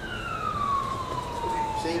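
Emergency vehicle siren in a slow wail, its pitch peaking at the start and then falling steadily for about two seconds.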